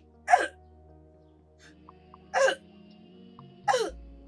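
A young woman retching in three short heaves, each falling in pitch, over steady background music. The heaves come just after the start, about halfway and near the end. The others take the retching as a sign she may be pregnant.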